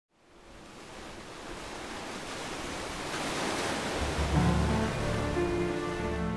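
A rushing wash of noise fades in from silence and swells steadily; about four seconds in, low sustained music notes enter beneath it and become the loudest part.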